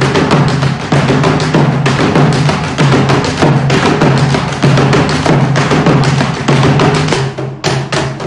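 Several chendas, Kerala cylindrical drums, played together with sticks in a fast, dense run of strokes over a steady low ring. The strokes thin briefly near the end.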